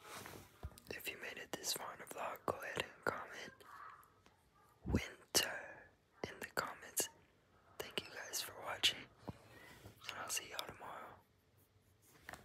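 A person whispering close to the phone's microphone in short, quiet phrases.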